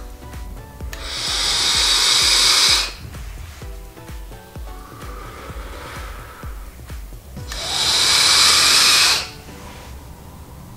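A person taking deep hits on a sub-ohm vape and blowing out thick clouds: two long, loud breathy hisses about two seconds each, with a softer draw between them. Background music with a steady beat plays throughout.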